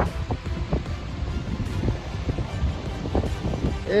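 Wind buffeting the microphone in a steady low rumble over the rush of floodwater running along the street, with a few faint knocks.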